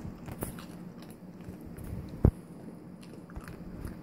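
A Pekingese chewing a treat: scattered small crunches and clicks, with one sharp louder crunch a little past halfway.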